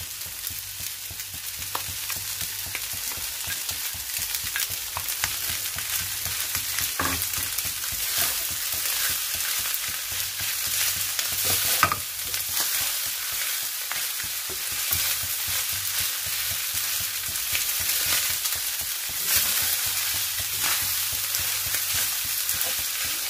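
Rice with onion and peppers sizzling in a frying pan as it is stirred: a steady frying hiss with a few sharper knocks of the utensil against the pan, the loudest about twelve seconds in.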